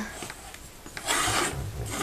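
A small easel stand being set up, its feet scraping across a cutting mat in one short rasp of about half a second, starting about a second in.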